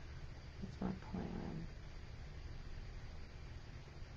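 A steady low background hum, with a woman's voice briefly saying a few words about a second in.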